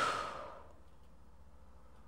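A woman's sigh: one breathy exhale at the start that fades out within about half a second, followed by quiet room tone.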